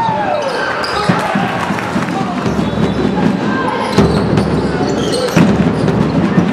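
Basketball game play in a sports hall: a ball bouncing on the court with a few sharp knocks, sneakers squeaking in short glides, and voices.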